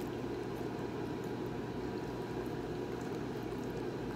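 Steady low rushing background noise with a few faint, small clicks over it.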